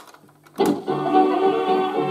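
A Grundig TK 149 valve reel-to-reel tape recorder is switched into playback with a click of its function lever about half a second in. Music from the tape then starts playing, with sustained held notes.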